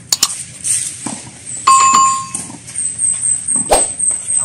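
Tennis ball hits from a rally: two sharp knocks right at the start and a louder one near the end. Midway comes a short ringing tone lasting about half a second, then a run of quick, high chirps.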